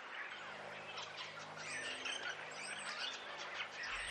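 Many small birds chirping and twittering at once, a steady chorus of short high calls, with a faint low hum under it through the middle.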